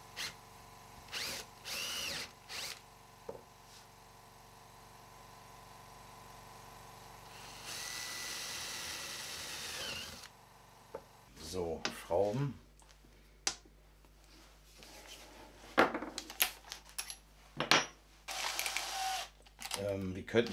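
Drill boring a hole through an MDF board with a spiral wood bit. It revs in short bursts, then runs steadily for about two and a half seconds and winds down, followed by irregular knocks and handling noises.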